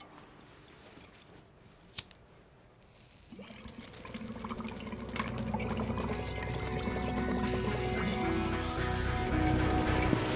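Water bubbling in a glass bong as it is smoked, growing steadily louder over several seconds, with music rising alongside it. A single sharp click comes about two seconds in.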